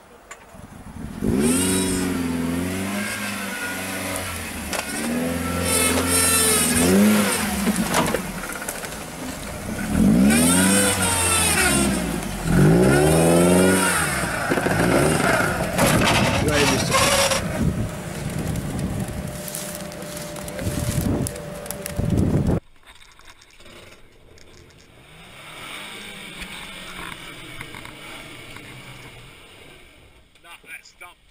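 Off-road 4x4 engines revving hard in repeated surges, the pitch climbing and falling. The sound cuts off suddenly a few seconds before the end, leaving a much quieter stretch.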